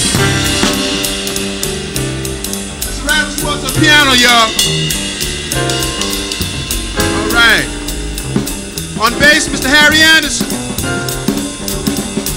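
Live jazz rhythm section of upright bass, drum kit and keyboard vamping, with a walking bass line and steady drumming. A man's voice comes over the PA in short phrases above the band several times.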